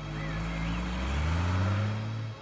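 Diesel engine of a Tata truck revving, its pitch rising steadily and growing louder.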